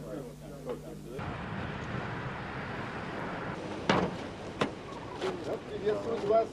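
Faint voices, then from about a second in a steady outdoor noise with several sharp clicks, the loudest about four seconds in.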